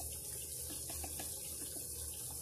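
Ground-spice masala frying in oil in a nonstick pan: a steady, soft sizzle with faint pops from the bubbling paste.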